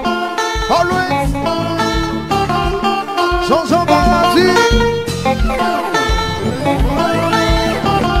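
Live band music: an electric guitar plays bending lead lines over bass, keyboard and a regular kick drum.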